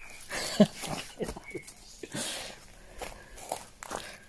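A hen walking over wood-chip ground: a run of light, irregular rustling steps.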